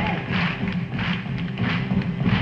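1950s rock and roll band playing softly between vocal lines: a boogie piano figure and steady drum strokes, with no singing.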